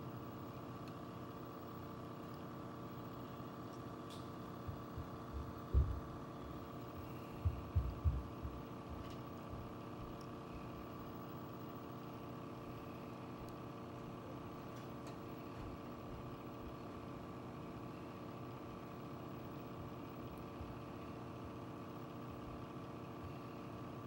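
A steady hum with several fixed pitches, with a few dull low thumps about six and eight seconds in.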